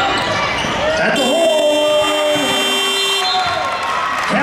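Arena scoreboard buzzer sounding one steady, high, many-toned blast of about two seconds, starting about a second in: the horn ending the period. Voices are heard under it, with court noise of a basketball game before it.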